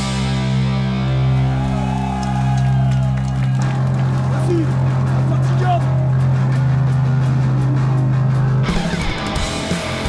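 Live punk rock band: electric guitar and bass hold a chord that rings out with no drums, and its lowest note drops away about three and a half seconds in while one note sustains. Near the end the full band with drums and cymbals comes back in.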